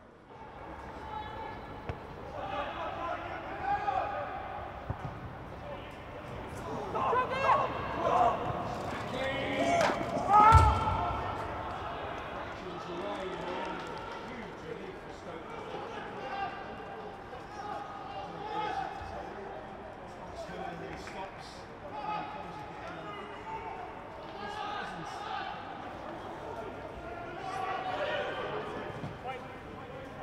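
Football match sound: indistinct voices calling across the pitch, with a single sharp thump of a ball being struck about ten seconds in.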